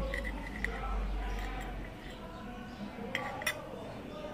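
Table knife sawing through a crisp-crusted corn-flake tapioca on a ceramic plate, quiet, with a few light clinks of knife and fork against the plate.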